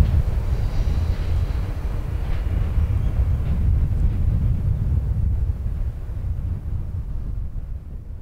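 Ballast train's loaded hopper wagons and rear van rumbling away along the track, a low rumble that slowly fades as the train recedes.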